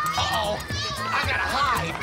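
Many young children shouting and calling out at once over background music.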